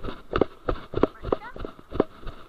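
Rhythmic footsteps of a person walking briskly on grass, about three steps a second, with the body-worn camera jostling at each step. A brief rising squeak comes about one and a half seconds in.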